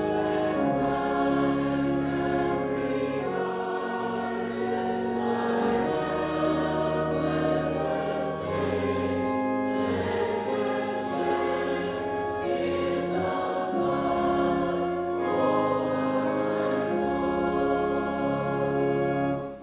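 Congregation and choir singing the closing hymn together, in long held notes that change every second or two.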